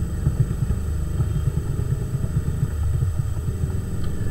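Steady low background rumble with a faint constant high-pitched whine above it.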